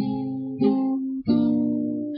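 Acoustic guitar strummed: three chords about two-thirds of a second apart, each left ringing.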